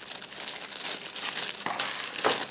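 Thin clear plastic zip-lock bag crinkling continuously as hands turn over a plastic mount inside it.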